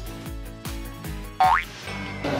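Edited-in upbeat background music with a steady beat, and a quick cartoon-style rising whistle sound effect about a second and a half in.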